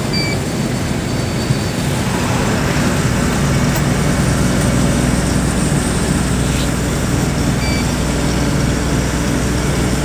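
A truck's engine running steadily at cruising speed, with tyre and road noise, heard from the moving truck.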